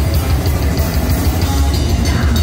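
Heavy metal band playing live and loud: distorted electric guitars, bass and drum kit, with a fast run of cymbal hits over a dense low end.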